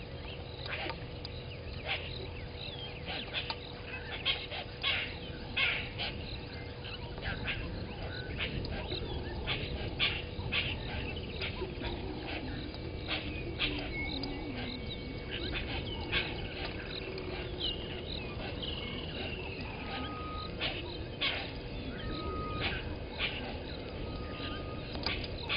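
Bush ambience: many short, sharp bird chirps and calls scattered throughout, over a steady faint hum and a low background rumble, with a few short whistled notes near the end.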